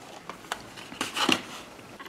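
Light handling noise: rustling and a few soft clicks of a cardboard box and a plastic watercolour palette being moved about in the hands, the busiest stretch about a second in.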